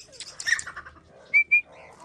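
Metal-framed wire-mesh cage door rattling and clattering as it is swung open, followed by two short, high whistled notes in quick succession.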